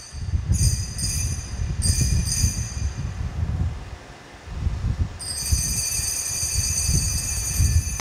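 Altar bells rung at the elevation of the consecrated host: two short shakes of ringing in the first three seconds, then a longer steady ring from about five seconds in. A low rumble runs beneath them.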